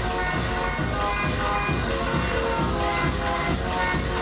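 Electronic dance music from a DJ set played loud over a club sound system, with a steady low beat and short repeating synth notes.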